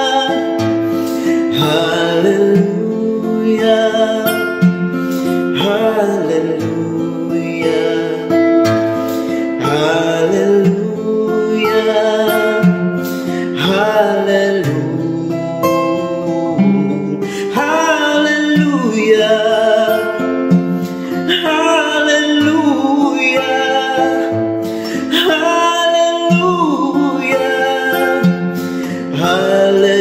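A man singing long, held, sliding notes over his own acoustic guitar, which is strummed and picked steadily.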